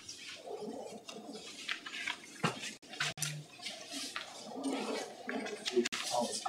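Faint, indistinct chatter of voices away from the microphones, with a few light clicks and rustles.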